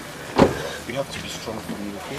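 A car door shutting with a single heavy thump about half a second in.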